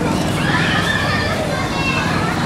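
Outdoor crowd chatter and children's voices, with a long, high-pitched child's call or squeal about half a second in, over steady low background noise.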